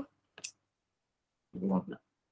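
A single short, sharp click about half a second in, followed about a second later by a brief voiced hesitation sound from the lecturer, with near silence between and after.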